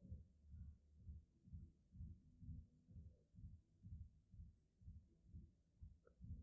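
Near silence with a faint, low, even pulsing at about two beats a second.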